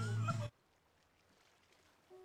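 A meow-like cry with a wavering high pitch over a steady low hum, cut off abruptly about half a second in, then near silence.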